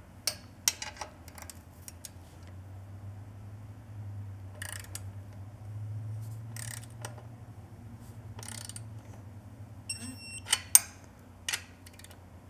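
Light metallic clicks and rattles of hand tools on a motorcycle exhaust head-pipe flange nut, over a steady low hum. Near the end comes a short high electronic beep, then a sharp click as the nut is torqued to 10 newton metres.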